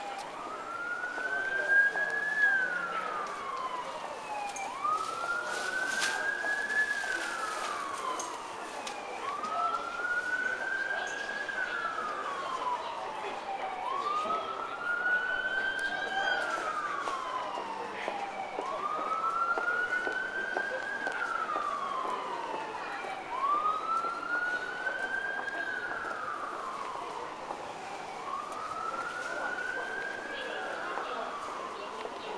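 A wailing siren, its pitch slowly rising and then falling, again and again about every four and a half seconds, seven times over, steady in loudness throughout.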